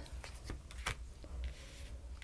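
Tarot cards being taken from the deck and laid down on a lace-covered table, with a few faint soft ticks and slides of card over a low steady hum.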